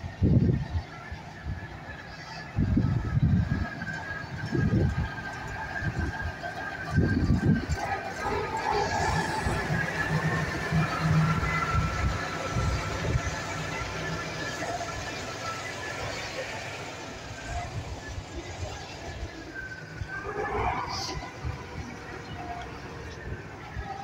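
Diesel engine of a Ural army truck running as the truck drives slowly past at close range. Irregular low rumbles in the first few seconds, then a steadier low engine drone that fades toward the end.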